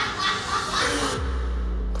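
People laughing over background music; a little over a second in the laughter stops and the music settles into a low, steady drone.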